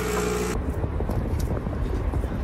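Low, steady road and engine rumble heard inside a moving car's cabin, setting in about half a second in. It follows a brief burst of noise with a hum at the very start.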